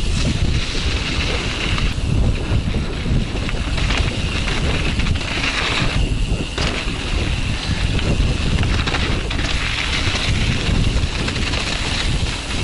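Wind rushing over the camera microphone together with the rumble of mountain-bike tyres rolling fast over a dirt trail on a descent.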